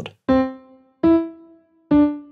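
Ableton Live's Grand Piano instrument playing back a short MIDI clip: three single piano notes one after another, about 0.8 s apart, rising then falling in pitch (C, E, then D), each dying away quickly.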